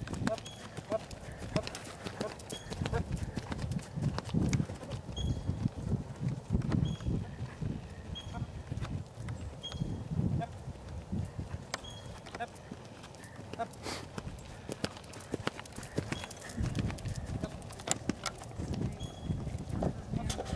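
A horse cantering on arena sand, its hoofbeats thudding stride after stride, with a short high squeak repeating at a steady rhythm.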